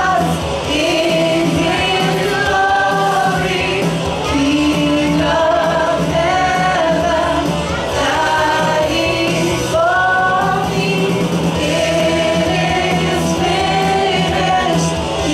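Christian worship song: voices singing a held, gliding melody over a steady accompaniment.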